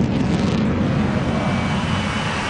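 Eurofighter jet's two turbofan engines, a steady, even jet noise as the plane flies past.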